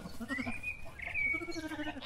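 Sheep bleating faintly, with a thin, higher whistling call that rises and then holds steady.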